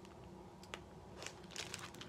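Clear plastic outer sleeve of a vinyl LP crinkling faintly as it is handled, in a few short scattered crackles.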